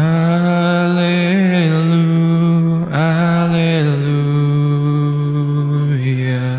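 A man's voice singing slow, long held notes through a microphone in two phrases, the pitch stepping down as each phrase goes on.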